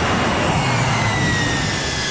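Jet aircraft engines running, a steady rumble under a high whine that slowly falls in pitch.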